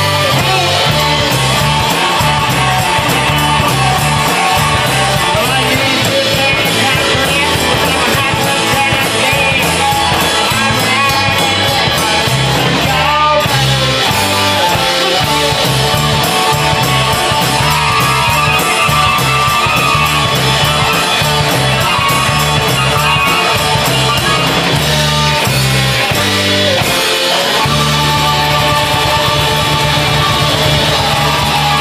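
Live band with banjo, acoustic and electric guitars and a washboard playing a loud, steady-rhythmed rock song.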